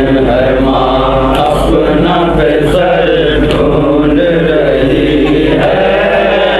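Men's voices chanting a noha, a Shia mourning lament, sung from a book in a slow melodic recitation with long held notes.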